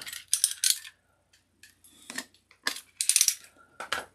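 The box and packaging of a floodlight kit being handled and opened: several short bursts of rustling and scraping, with quiet gaps between them.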